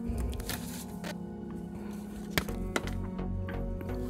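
Soft background music with a steady melody, overlaid by a few light clicks and taps of paper and a plastic ruler being handled on a journal page.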